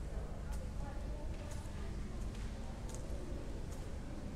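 Faint outdoor ambience: distant indistinct voices of people, with a few light clicks of footsteps on a marble floor.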